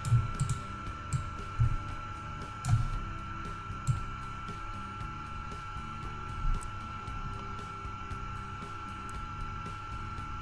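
Steady background noise of the recording setup: a low hum with a thin high whine, and a few faint clicks and bumps.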